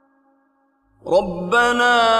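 Near silence, then about a second in a man's voice starts chanting a Quran recitation in long, slow, melodic held notes, opening the phrase 'rabbana wa la tahmil 'alayna isran'.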